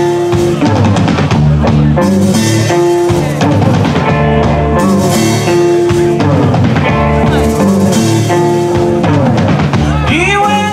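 Live rock band playing an instrumental stretch: electric guitar playing long held notes over a drum kit and bass.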